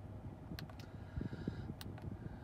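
A few faint clicks from the buttons of a Honda Accord's infotainment head unit being pressed, the sharpest near the end, over a low steady hum in the car's cabin.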